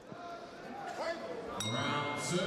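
Ring bell struck once about a second and a half in, ringing on with a high metallic tone: the signal that starts the second round. Faint voices in the hall come before it.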